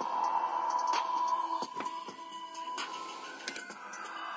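Music playing through a small vibration speaker (exciter) clenched in a fist: a held high note with sharp beats, sounding clearer but not loud with the hand pressed against it.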